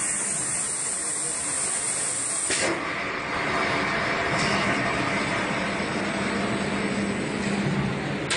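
Steady hiss of air from a PCB vacuum loader's pneumatic suction system, mixed with machine noise; the hiss loses its highest part suddenly about a third of the way in, and a low steady hum joins about halfway.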